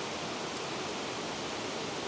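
Steady rush of a creek flowing over rocks below a waterfall, an even hiss with no breaks.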